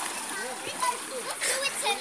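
Children's voices and water splashing in a swimming pool.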